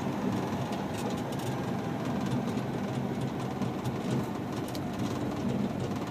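In-cab sound of an International TranStar tractor on the move: its Cummins Westport ISL G natural-gas six-cylinder engine runs steadily under a load of about 66,000 pounds, with road noise and a few faint clicks and rattles.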